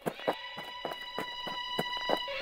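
Footstep sound effect: a quick run of light steps, about three to four a second, over a held high musical tone.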